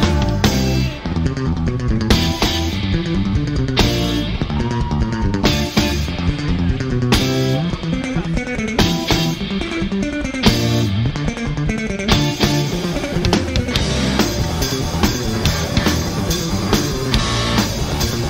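Live reggae-rock band playing an instrumental passage with electric guitar, bass guitar and drum kit, with strong accents about every one and a half seconds.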